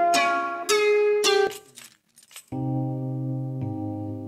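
Sample previews played back from music production software: a few plucked, guitar-like notes, each struck and dying away, then after a short silence a held electric-piano (Rhodes) chord loop that moves to a new chord about a second later.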